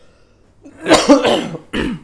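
A man coughing or clearing his throat: a loud, rough burst about a second in, followed by a shorter one.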